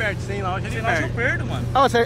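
A Porsche convertible's engine running at a steady low hum while the car cruises, heard from inside the open-top cabin, under men's excited exclamations.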